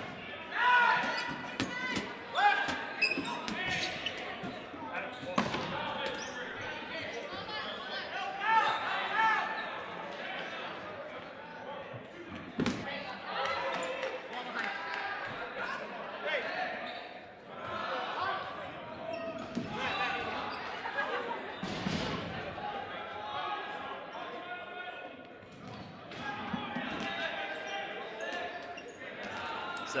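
Dodgeballs being thrown and bouncing on a hardwood gym floor, with sharp smacks scattered through the rally, the loudest about halfway through and again a little past two-thirds of the way in. Players shout and call to each other throughout, echoing in the large hall.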